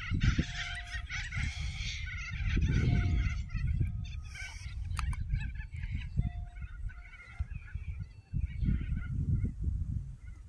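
Wind rumbling on the microphone on an open field, with a series of short, higher-pitched calls or tones heard over it several times.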